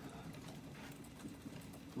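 Quiet room tone with faint, scattered clicks.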